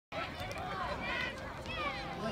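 Spectators' voices at an outdoor youth football game: several high-pitched calls and chatter over a steady low rumble.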